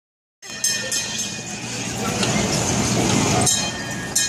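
Kiddie fire-truck carousel ride turning: a steady mechanical running noise with sharp clicks and clatter, several in quick succession near the start and one more near the end.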